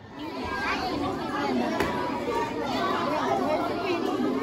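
A crowd of children talking and chattering at once, many overlapping voices with no single voice standing out.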